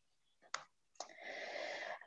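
Two faint, short clicks about half a second apart, followed by a soft breathy hiss lasting about a second.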